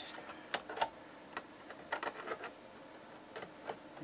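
Faint, irregular small clicks and ticks of a small screwdriver and loose screws against the plastic case of an Allen-Bradley PanelView 550 terminal as the screws are worked out.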